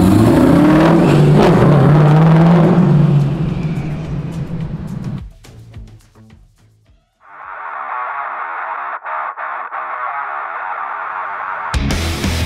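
V8 of a classic Camaro, with a centrifugal supercharger and LS7, accelerating away, its pitch rising over the first three seconds before fading out. A thin-sounding rock guitar intro follows and opens into full heavy rock music near the end.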